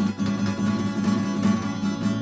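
Acoustic guitar strummed in steady chords, with no voice.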